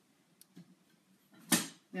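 Quiet room with a faint click, then a short, sharp intake of breath about one and a half seconds in.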